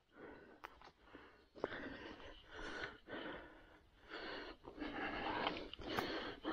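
A man breathing heavily and wheezily, about three long audible breaths, with a few faint clicks of steps on the forest floor between them.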